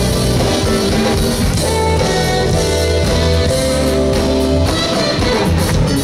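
Live jazz band playing, with drum kit, electric bass, keyboards and alto saxophone.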